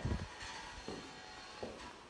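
A low thump right at the start, then soft footsteps walking along a corridor, about one step every three-quarters of a second.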